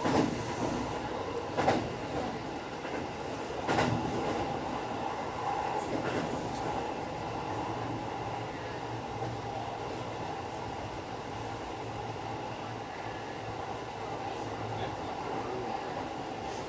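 Electric commuter train running at speed, heard from inside the car behind the front window: a steady rumble of wheels on rail with a low hum, and a few sharp knocks in the first four seconds.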